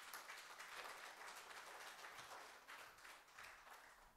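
Congregation applauding, a faint dense patter of many hands clapping that fades out near the end.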